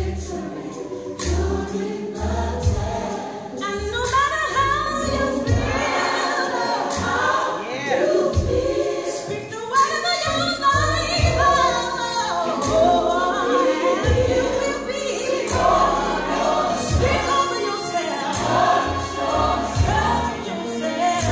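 Gospel choir music: a choir singing over a steady bass line, the voices growing fuller about four seconds in.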